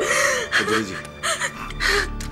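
A woman crying, with several short gasping sobs.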